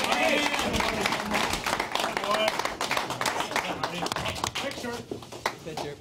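A room of men clapping, with overlapping shouts and voices; the clapping thins out toward the end.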